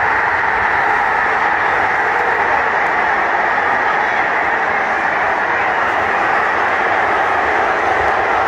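Football stadium crowd roaring at a goal, loud and steady throughout.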